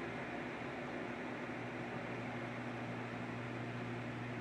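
Steady room noise: a low, even hum with a faint hiss underneath, unchanging throughout, with no other events.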